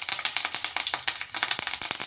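Hot oil crackling and spitting in a stainless-steel kadai as whole spices and leaves fry in it for the tempering: a dense, uneven run of sharp pops over a steady sizzle.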